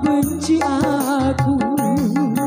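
Live electone (orgen tunggal) music from a Korg arranger keyboard through PA speakers: a bending, wavering melody line over a steady bass and beat.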